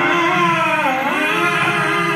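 A man singing a long, held note with no words, gospel style. The pitch dips a little before the 1-second mark, then settles on a new sustained note.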